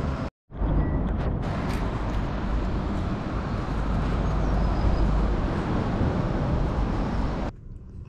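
Diesel being pumped from a forecourt fuel pump into a van's tank: a steady rushing noise with a low rumble, which cuts off near the end.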